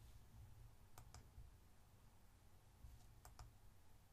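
Faint computer mouse clicks over near silence: two quick double ticks, about a second in and again a little past three seconds.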